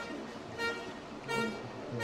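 A horn tooting in a steady rhythm, a short blast about every 0.7 seconds, typical of spectators' horns cheering on the closing stage of a canoe race.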